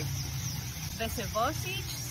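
Steady low rumble of an idling motor vehicle engine in the background, with a brief voice sound about a second in.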